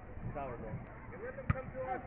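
Faint shouts of youth soccer players and spectators across the field, with one sharp thud of a soccer ball being kicked about one and a half seconds in.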